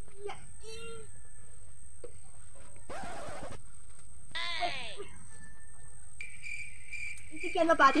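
A woman's voice in short fragments: a brief exclamation with falling pitch about four and a half seconds in, and speech starting near the end. These sit over a steady low background and a thin steady high tone, with a short rustle about three seconds in.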